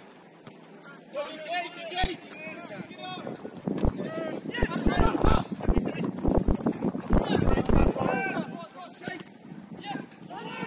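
Footballers shouting and calling to one another during open play, several short calls overlapping, busiest in the middle of the stretch, with scattered low thumps among them.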